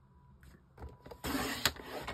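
Paper trimmer's cutting head sliding down its rail, slicing through thick white card, starting a little after a second in, with a sharp click partway through.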